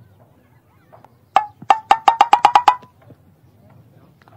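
A quick run of about nine sharp knocks over roughly a second and a half, speeding up, each with a short ringing tone that climbs slightly in pitch.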